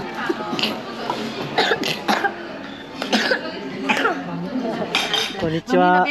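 Indistinct voices at a restaurant table with several short, sharp clinks of cutlery and dishes.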